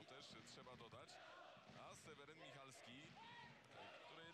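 Near silence with faint, indistinct voices in the background; a man laughs near the end.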